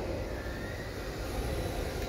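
MST RMX 2.0 RC drift car running at a distance: a faint electric-motor whine that rises briefly about half a second in, over a steady noisy hum.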